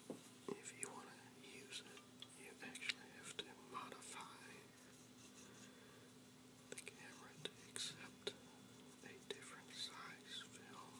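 Faint whispering with scattered small clicks from handling a 1930s folding camera while cleaning it.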